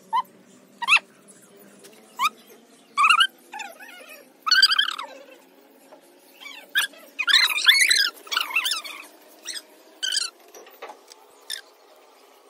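Repeated short animal calls with bending pitch, some single and some in quick runs, loudest in a cluster about seven to eight seconds in, over a faint steady hum.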